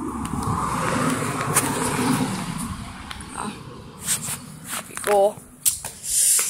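A rushing noise that swells and fades over the first few seconds, then a few sharp clicks and knocks as a house's front door is opened, with a short voiced sound about five seconds in.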